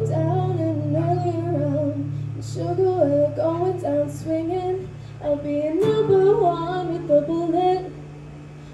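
Live duo music: a girl singing a melody over a strummed acoustic-electric guitar, its chord ringing under the voice. The guitar is strummed again about six seconds in.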